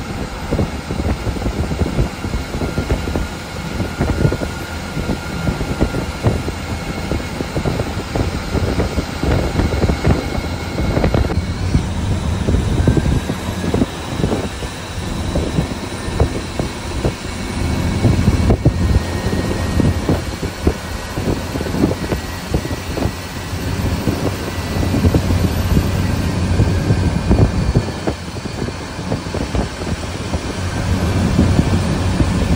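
Cabin noise of an Ashok Leyland AC sleeper bus running at highway speed: a steady low rumble of engine and road, with frequent rattles and knocks from the body.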